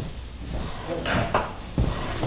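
A small hand tool scraping along the edge of a hardwood benchtop in a few short strokes, then a single knock of wood on wood.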